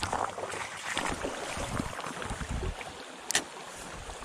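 Shallow river running over stones in a riffle, close to the microphone, with a single sharp click a little over three seconds in.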